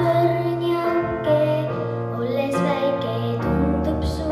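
A girl singing solo into a microphone over instrumental accompaniment with a steady bass line, her voice holding and bending long notes.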